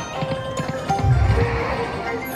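88 Fortunes video slot machine's reel-spin sound: rapid clicking as the reels turn, with a deep thud about a second in as they land, over the machine's steady chime tones. The reels stop on a losing spin.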